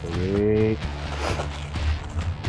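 A short held vocal sound from a person, then soft rustling of packing material being pulled apart by hand.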